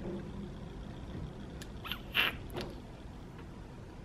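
Faint handling noise from a handheld camera, with a few short squeaky clicks around the middle; the loudest comes about two seconds in.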